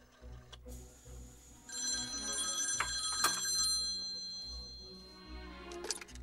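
A telephone's bell ringing: one long ring starting a little under two seconds in and fading away over a few seconds, with a couple of sharp clicks partway through. It is the call being put through to the other end of the line.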